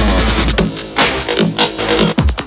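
Electronic background music with a heavy drum-and-bass beat; its sustained low bass drops out about half a second in, leaving sharp drum hits.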